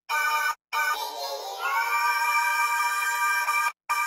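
A sung vocal sample in a high register, heard on its own: held notes that break off suddenly about half a second in and again near the end.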